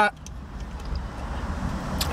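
Steady low rumble of a car's cabin background, with no distinct event standing out.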